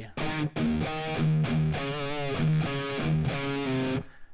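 Electric guitar, tuned down a half step, playing a rock riff: rapid chugging on the open low E string broken by single melody notes on the A string (7th and 5th frets), several notes a second.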